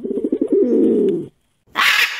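Dove cooing, a rolling, pulsing coo lasting about a second, followed near the end by a short, harsh, loud burst of noise.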